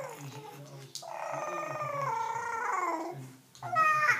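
Six-month-old baby vocalizing: one long, high-pitched drawn-out call of about two seconds that falls in pitch at its end, with a shorter call starting near the end.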